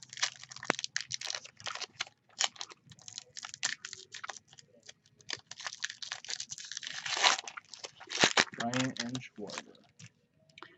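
Foil wrapper of a baseball card pack being torn open by hand: a run of crinkles, crackles and rustles, with a longer tear about seven seconds in.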